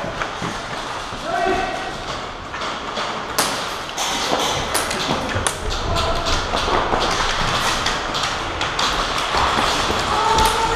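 Airsoft gunfire echoing in a large hall: irregular sharp cracks and knocks that grow frequent from about three seconds in. Distant shouting voices sound under them.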